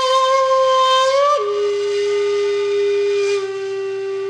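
Outro music: a wind instrument holds one long flute-like note, then steps down to a lower note about a second and a half in and holds that.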